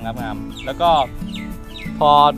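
A man talking over background music.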